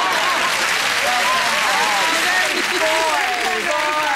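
Large studio audience applauding steadily, with many voices cheering and calling out over the clapping.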